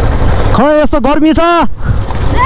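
Motorcycles riding along a dirt road: a steady low engine and wind rumble, with a voice calling out a few drawn-out syllables from about half a second in until near the end.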